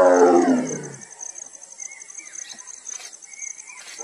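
A Bengal tigress calling, a long moaning call that falls in pitch and fades out about a second in; a second call begins right at the end. She is a mother calling in search of her cubs.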